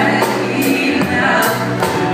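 Live band music: a man singing lead at the microphone over guitars and drums, with a bright percussive hit about twice a second.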